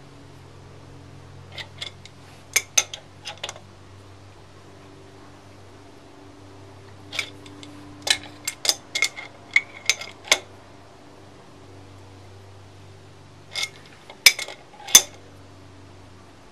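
Sharp metallic clinks of a wrench working the nut of a harmonic balancer installer, pressing the damper pulley onto the crankshaft, in three bursts of several clinks each. A low steady hum runs underneath.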